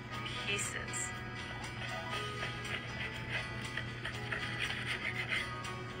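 Soft background music from a TV cooking show with steady held tones, under faint kitchen sounds.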